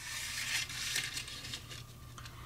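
Stiff parchment paper rustling and crinkling as a folded note is handled and opened, a run of crisp crackles loudest in the first second or so.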